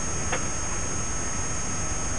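Peugeot 205 GTI rally car driving at speed, its engine and road noise heard as a steady low rumble inside the cabin. A brief click comes about a third of a second in.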